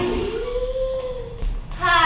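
A woman's voice holding one long sung note, a click from the stage door's latch, then her singing starts again as the door opens.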